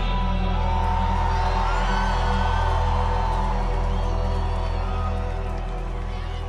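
Live concert music ending a song: a held low bass chord with a few whoops from the crowd over it, easing off near the end.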